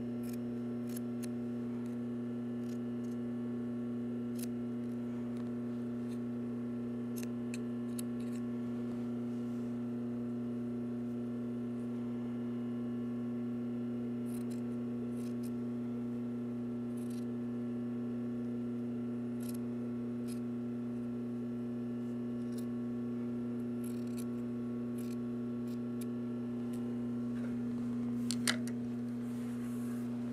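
Scissors snipping through sweatshirt knit in short, irregular cuts, trimming back one layer of seam allowance. A steady low hum runs underneath, and a louder sharp knock comes near the end.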